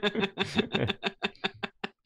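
Laughter: a quick run of short, breathy 'ha' pulses, about seven a second, that get shorter and fainter and stop just before the end.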